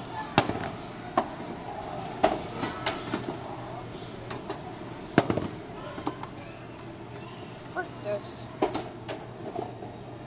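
Skee-ball balls knocking and clacking, a string of irregular hard knocks with the loudest about five seconds in, over the steady chatter and din of a busy arcade.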